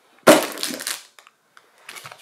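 Sealed plastic bags of LEGO bricks dropped onto a table: a thump about a quarter second in, followed by under a second of rattling bricks and crinkling bag plastic, then a few small clicks.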